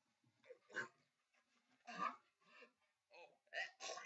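A man's short, non-word vocal noises, like gasps and grunts: a handful of brief bursts with gaps between, loudest about two seconds in and near the end.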